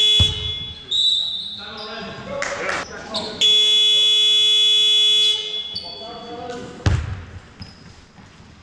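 Sports-hall scoreboard buzzer sounding twice: a short blast at the start and a longer steady blast of about two seconds a few seconds in. There is a loud thud near the end.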